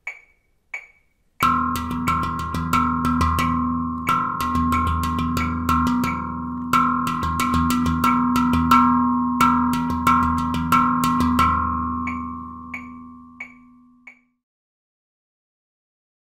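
Handpan played by hand: a rhythmic pattern mixing longer and shorter note values on the ding and tone fields, over a steady metronome click of about three ticks every two seconds. The playing starts about a second and a half in, and the last notes ring out near the twelve-second mark while the clicks go on briefly.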